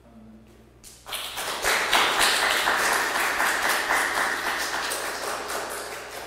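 Audience applauding: a burst of many hands clapping that starts about a second in, is loudest soon after and slowly dies away.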